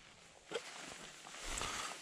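A small metal tin is handled and its lid pulled off, with a short metallic click or scrape about half a second in and soft handling noise after.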